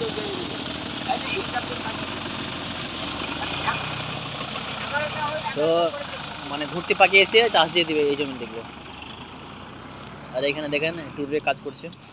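Tractor diesel engine running steadily close by, then growing fainter from about eight seconds in as the tractor drives off down the road.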